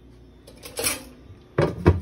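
Kitchen handling sounds: a brief rustle, then two sharp knocks near the end as the metal-and-plastic basket of an air fryer is handled.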